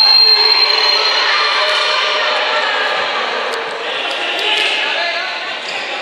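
Spectators shouting and cheering in a reverberant sports hall after a goal. A long steady whistle blast opens the sound and fades out after about two seconds.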